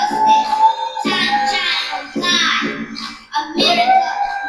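A child singing over backing music, phrase after phrase with short breaks between.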